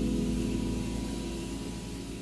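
A jazz piano trio's held chord, piano with bass underneath, ringing and slowly dying away.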